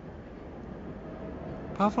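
Faint city street noise, a low even hum of traffic, slowly growing louder; a narrator's voice starts near the end.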